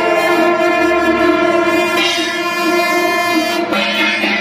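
Music of long held notes, several pitches sounding together, shifting to new notes about halfway through and again just before the end.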